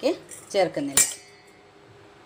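A steel spoon clinks once against a stainless-steel bowl about a second in, with a short metallic ring after it.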